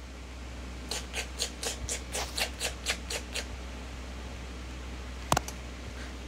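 Crunchy chewing sound effect of a pepper being eaten: about ten quick crunches, roughly four a second, lasting two and a half seconds, then a single click near the end.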